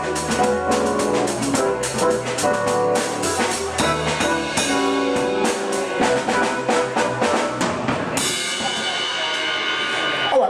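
Live jazz trio playing, with a busy drum kit to the fore over keyboard and bass notes. About eight seconds in, the low notes and drum strikes drop away and a cymbal wash and a held chord ring on as the tune ends.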